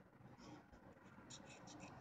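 Very faint snipping of scissors cutting through grosgrain ribbon: a few soft, crisp ticks in the second half, otherwise near silence.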